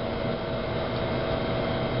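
Steady machine hum: a constant rushing noise with a thin steady whine in it, the running noise of kitchen fans or equipment.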